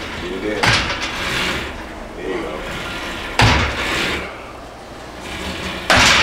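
Weight stack of a chain-driven cable machine knocking with each rep of a heavy cable deadlift pull, three thumps about two and a half seconds apart, along with the lifter's loud breaths and grunts of effort.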